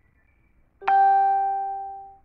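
A single bell-like chime, striking sharply about a second in and ringing out over about a second.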